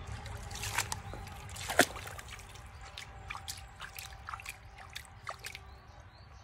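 Shallow creek water trickling over stones, with small splashes and clicks of water being stirred, and one sharper splash or click about two seconds in.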